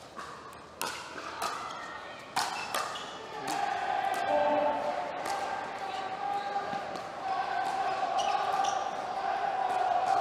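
A pickleball rally: pickleball paddles strike the plastic ball in a run of sharp pops, several in the first three seconds and fainter ones after. From about three and a half seconds in, crowd voices swell and hold, louder than the hits.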